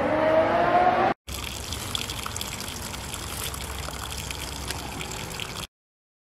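A rising whine in the first second, cut off abruptly. Then a steady rush of water ballast draining out of a tractor tire, ending suddenly near the end.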